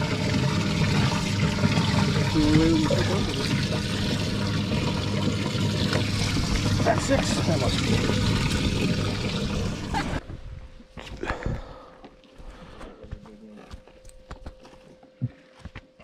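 Water spraying and splashing in a bass boat's livewell, with a steady pump hum beneath. It cuts off abruptly about ten seconds in, leaving faint outdoor sound and a few clicks.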